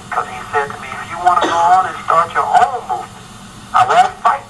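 Speech only: a person talking over a faint steady hum.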